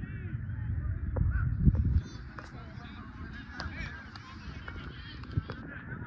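Repeated honking bird calls, many short ones overlapping, over a low rumble that is loudest in the first two seconds and drops off suddenly about two seconds in.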